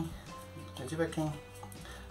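A lull between sentences: a man's voice murmurs faintly, in short snatches under his breath, about halfway through, over a faint steady low hum.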